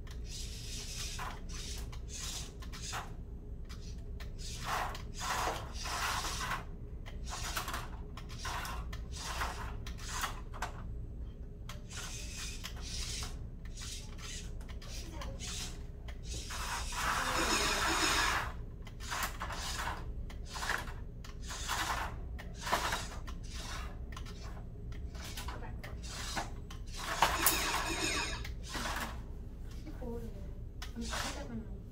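Small VEX IQ competition robot driving in short stop-start runs, its motors and plastic parts scraping and knocking against plastic game pieces on the field. The clatter is irregular, with louder stretches about 17 and 27 seconds in.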